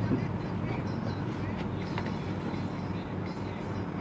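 A pause in speech filled by a steady low hum and background noise, with one faint click about two seconds in.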